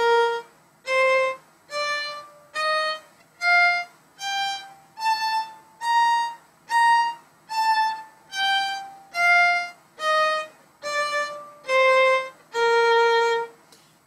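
Violin playing a B-flat major scale one octave up and back down, about one note a second, each note a separate bow stroke with a short break between, the top note played twice and the last note held longer.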